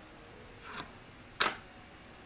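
A sharp click about one and a half seconds in, with a fainter one shortly before it, as a tarot card is put down on the spread of cards.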